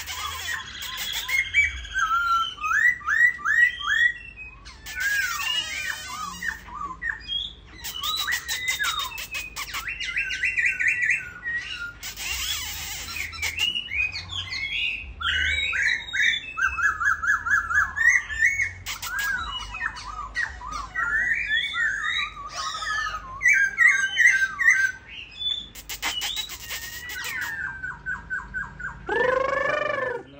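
A caged khướu mun laughingthrush, a dark form of the black-throated laughingthrush, sings a long, varied song of rich whistles, quick trills and pitch glides. The song is broken several times by short bursts of harsh rattling notes.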